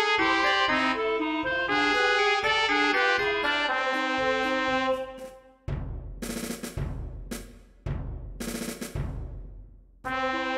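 Software playback of a notated ballad score: a melody with chords in a brass-like synthesized timbre, ending about halfway through. A percussion interlude follows, with a few heavy drum strikes roughly a second apart, each ringing out and fading.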